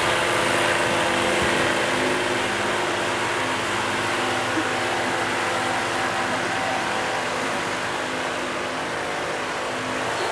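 Wind machine blowing on the competitors: a steady motor drone under a rushing of air that eases slightly toward the end.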